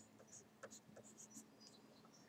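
Faint scratching of a pencil on paper, a series of short strokes as a number is written.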